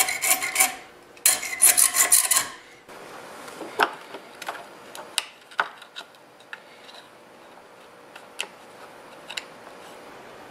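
Hacksaw cutting a small piece of perfboard clamped in a vise: two quick runs of rasping strokes in the first two and a half seconds. After that, scattered small clicks and taps of a circuit board being handled and fitted into a plastic enclosure.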